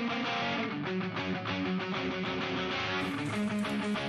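Background music carried by guitar, a run of changing notes at an even level.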